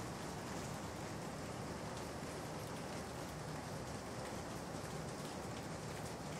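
Steady, faint hiss of background noise from the lecture microphone in a quiet room, unchanging and with no other sounds.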